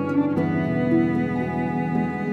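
Background music carried by bowed strings, cello and violin, playing slow held notes.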